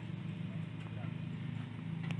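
Construction-site machinery running with a steady low hum, with a few faint knocks.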